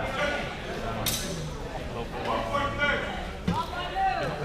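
Voices of people talking in a large, echoing hall, with a sharp, brief sound about a second in and a short knock near the end.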